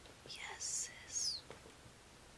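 A woman whispering two short breathy words, with a few faint clicks around them.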